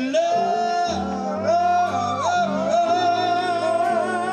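Male lead singer holding long, wavering notes into a microphone over a live R&B band, with a brief higher harmony voice and bass notes coming in about a second in.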